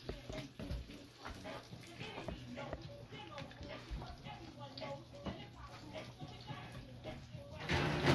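Faint voices and music in the background, with scattered small clicks and knocks, and a short louder burst of noise just before the end.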